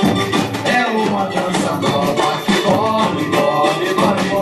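Live samba band music: a percussion section of surdo bass drums and snare-type drums playing a fast, steady samba beat, with a pitched melody line over it.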